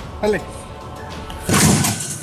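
A blow striking a coin-operated boxing arcade machine about one and a half seconds in: a single loud, noisy hit lasting under half a second, the loudest sound here. The machine's electronic music plays faintly underneath.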